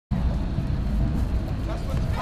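Outdoor background noise that cuts in suddenly at the start: a steady low rumble with people's voices in it.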